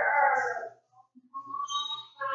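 Voices only: the drawn-out, sing-song end of a spoken question, a short pause, then a brief held hum before the answer begins.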